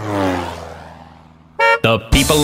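A cartoon sound effect: a pitched tone slides down and fades away, then a cartoon bus horn gives a short toot about a second and a half in.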